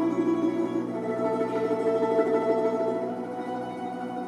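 Folk-instrument ensemble playing: round-bodied domras and a balalaika on plucked strings with button accordion and grand piano, holding sustained notes that die away over the last second.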